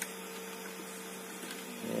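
Steady low electrical hum with two constant tones from the powered vending-machine electronics, while a coin is about to go into the coin acceptor.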